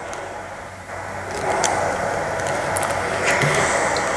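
Small steam iron hissing as it puts out steam onto fabric, the hiss growing louder about a second in and then holding steady.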